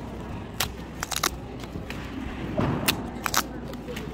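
Paper pull-tab tickets being torn open by hand: several short, crisp rips and snaps of the perforated tabs, over background chatter.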